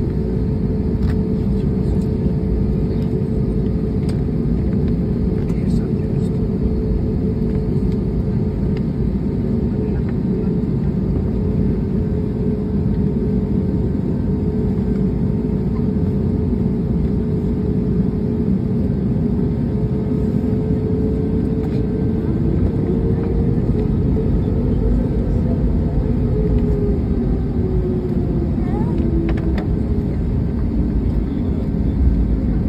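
Jet airliner's engines heard from inside the cabin while taxiing: a steady low rumble with a whine just under 500 Hz that slides down in pitch in the last third.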